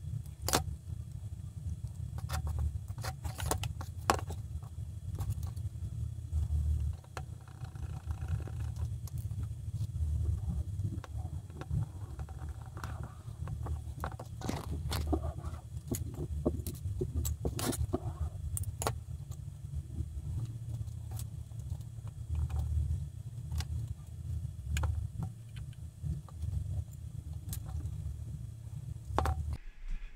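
Scattered small clicks and ticks of scissors snipping and of small hard plastic model parts being handled and fitted, over a steady low rumble.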